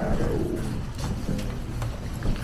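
Music with steady bass notes, plausibly the rap track being played back alongside the footage.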